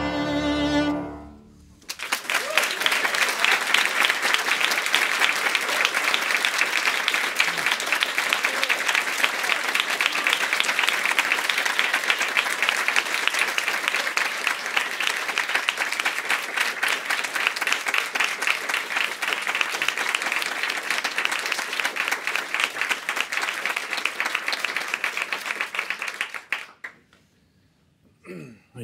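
The final chord of violin and piano rings and dies away in the first second or so. After a short pause, a small audience applauds steadily for about 25 seconds, cutting off abruptly near the end.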